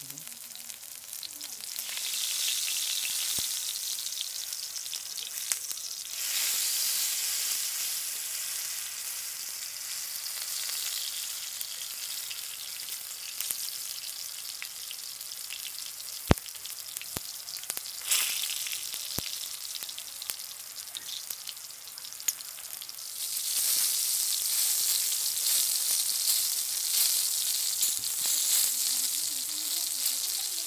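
Watermelon pieces deep-frying in hot oil: a steady sizzling crackle that swells louder in a few spells, with a few sharp pops.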